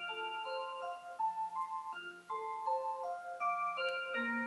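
Rhythm Magic Motion 'Small World' wall clock playing its built-in melody: a tune of clear, sustained notes, several at once, stepping from note to note every few tenths of a second.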